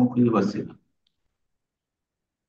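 A man speaking for under a second, then silence with a single faint click.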